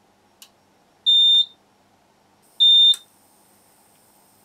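A click from the power button of an Eaton Powerware PW5115 UPS, converted to run as an inverter from a 12 V supply, then two short high-pitched beeps from its beeper about a second and a half apart as the unit starts up. A faint steady high whine sets in with the second beep.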